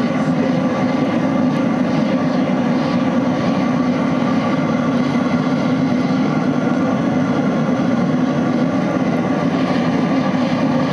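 Oil burner running with a steady, loud rush of flame and air forced through its red-hot pipe, unbroken throughout.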